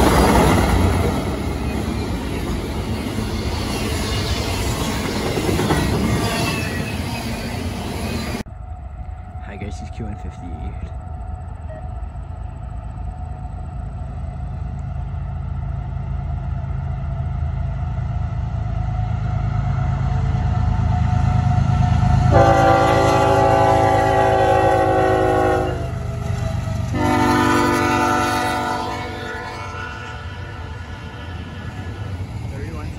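A CSX diesel freight locomotive passing close, its wheels and engine making a loud rumble until a sudden cut about 8 seconds in. Then a second freight train's engines rumble as it approaches, and its multi-chime locomotive air horn sounds two long blasts near the end.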